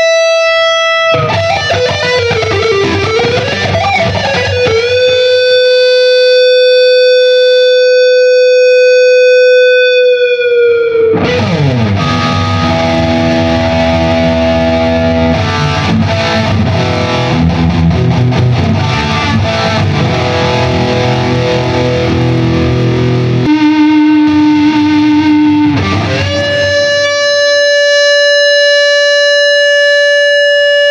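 Artist TC59 T-style electric guitar with humbucker pickups, played with a distorted tone: sustained lead notes with bends and vibrato and a long held note. About eleven seconds in it slides into a dense stretch of chords, then goes back to long held single notes near the end.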